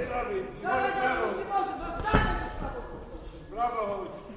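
Men's shouting voices echoing in a large hall, with one sharp thud about two seconds in.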